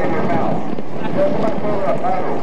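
Indistinct voices of people talking, with no clear words, over a steady background rumble.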